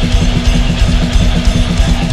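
Heavy rock band playing live: a distorted Les Paul-style electric guitar riff through a Vox amp over bass guitar and a fast, steady drum-kit beat, with no vocals.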